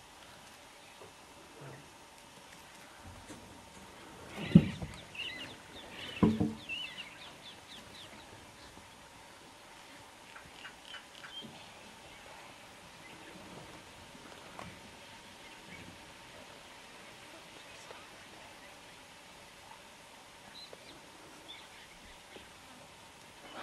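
Birds chirping in short bursts of quick notes, with two loud knocks about four and a half and six seconds in; otherwise a low outdoor background.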